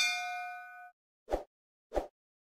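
Notification-bell 'ding' sound effect: a bright chime of several tones that rings out for about a second. It is followed by two short, dull pops about two-thirds of a second apart.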